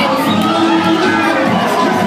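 Young folk dancers shouting together over Bulgarian folk dance music.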